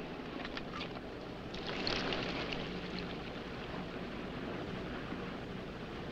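Liquid pouring out of a soldier's canteen and splashing onto dry, sandy ground. It swells about one and a half seconds in and tails off over the next couple of seconds, over a steady background hiss.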